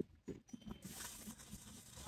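A garden hose spray nozzle starts spraying water, a faint even hiss that begins about a second in, after a few small handling clicks.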